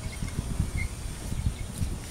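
Irregular low thumps and rumble from the hand-held camera being moved about, with a few faint short bird chirps in the first second.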